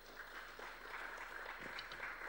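Audience applauding: faint, steady clapping from a room full of people.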